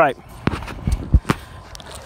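A few soft thumps and sharp clicks close to the microphone, irregularly spaced, the heaviest just past the middle.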